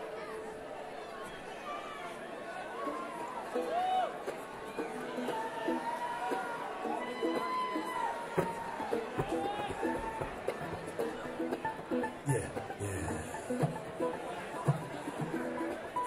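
Audience chatter and shouts in a concert hall, with a few loose plucked notes from the band's string instruments.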